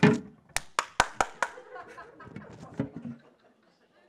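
Hand clapping: about five sharp claps in quick succession, an impatient clap of frustration, as if to hurry someone along.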